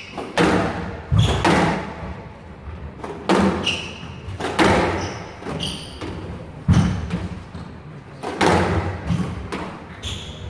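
Squash rally: the ball cracks off rackets and walls roughly once a second, often in quick pairs, each hit echoing around a hall. Short high squeaks from court shoes on the floor come in between.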